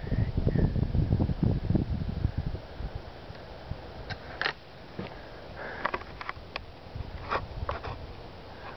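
Camera handling noise while zooming: low rumbling buffets on the microphone for the first couple of seconds, then quieter, with a few scattered light clicks and rustles.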